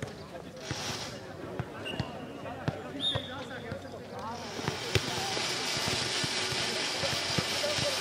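Futnet balls thudding as they bounce and are kicked on clay courts: scattered sharp knocks, the loudest about five seconds in, over distant voices. A steady hiss sets in about halfway.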